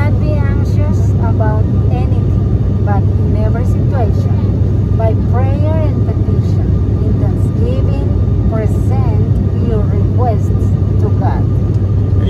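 Airliner cabin noise in flight: a loud, steady low drone of engines and airflow, with a woman's voice speaking over it.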